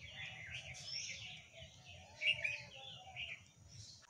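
Small birds chirping in short scattered calls, the loudest a little over two seconds in, over a faint low background rumble.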